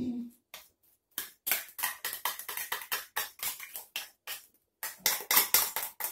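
Metal fork scraping tuna in tomato sauce out of a small tin into a glass bowl of egg yolks and tapping against it: a rapid string of short clicks and scrapes, about five a second, with a brief pause a little over four seconds in.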